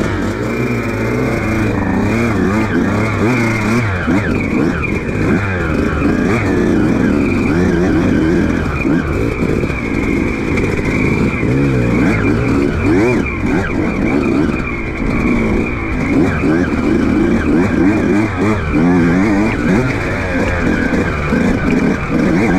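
Yamaha YZ125 two-stroke dirt bike engine revving up and down over rough ground, its pitch rising and falling every second or so as the throttle is worked.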